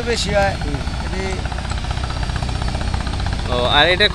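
An engine running steadily with a low, even rumble. A man's voice comes in briefly at the start and again near the end.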